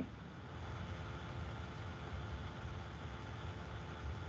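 Quiet room tone: a steady low hum and faint hiss with no speech.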